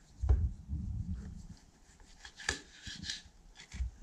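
Kitchen knife sawing through hard air-dried meat on a wooden cutting board, with low thumps of the board and meat being handled in the first second or so and a few sharp knocks later on.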